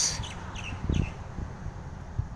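A couple of faint, short bird chirps, about half a second and a second in, over a low background rumble.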